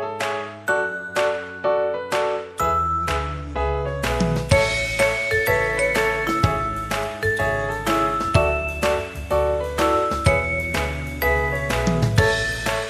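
Background music: bright, bell-like chiming notes struck about twice a second, with a bass line coming in about two and a half seconds in.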